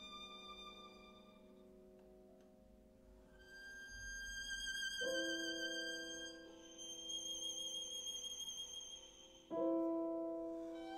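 Soft, sparse violin and piano music. A Giovanni Grancino violin (1700–1705) holds high notes with vibrato, and a Bechstein piano strikes a chord about five seconds in and a louder one near the end, each left to ring.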